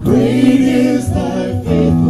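Live worship song: voices singing held phrases over acoustic guitar and djembe. The singing comes in loudly at the start after a quieter moment.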